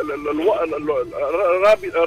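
Speech only: a man talking in Tunisian Arabic.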